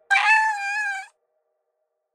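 A cat's meow: one call about a second long that cuts off sharply.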